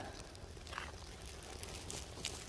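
Paper birch bark burning in a small twig fire lay: a faint crackle with a couple of soft snaps.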